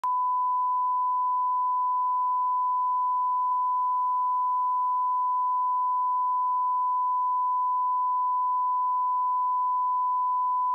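A steady, unbroken 1 kHz line-up test tone, a single pure pitch held without change, of the kind recorded at the head of a broadcast tape.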